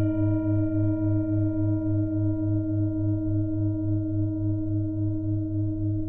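A singing bowl ringing on after a single strike, its low tone pulsing about four times a second as the sound slowly fades.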